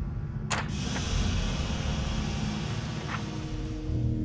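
A low droning music bed with a sharp click about half a second in, followed by a steady mechanical whirring hiss and a second, softer click near the end.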